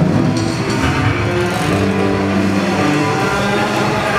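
Rock band playing live: electric guitars holding sustained, droning chords that change every second or so, over drums.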